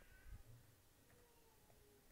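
Near silence: faint room tone, with a few thin, faint tones gliding slowly down in pitch.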